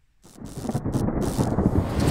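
Rumbling thunderstorm sound effect, with a rain-like hiss over it, fading in about a quarter second in and growing steadily louder.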